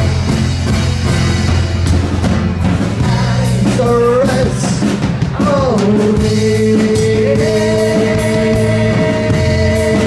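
Live rock band playing: vocals over bass guitar, acoustic guitar and drums, with a long held note through the second half.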